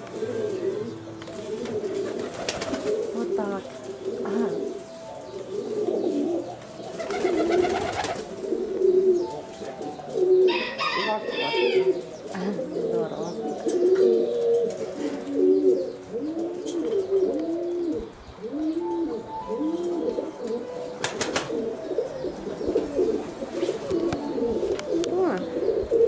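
Pigeons in a loft cooing continuously, many low coos overlapping and rising and falling in pitch. About ten seconds in there is a brief, higher-pitched chirping.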